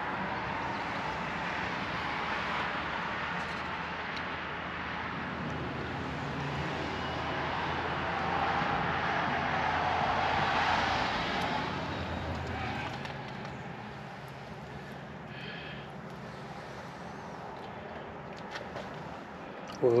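A passing vehicle: a steady rush that builds to a peak about ten seconds in, then fades to a lower background hum.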